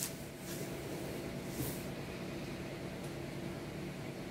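Plastic wrap rustling faintly as it is peeled off a frozen pizza, over a steady low room hum.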